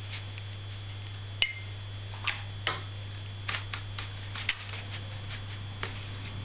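Irregular light taps and clicks of a Chinese painting brush working on the paper and against the palette dish, one sharper click with a brief ring about one and a half seconds in, over a steady low hum.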